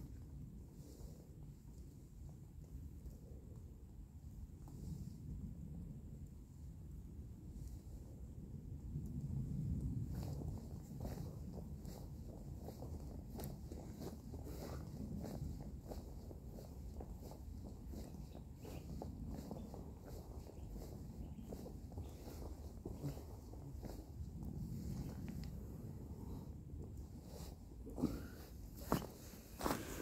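Feet shifting and stepping in dry fallen leaves, faint crackling rustles over a low steady rumble, with a few louder crunches near the end as the steps come right up to the microphone.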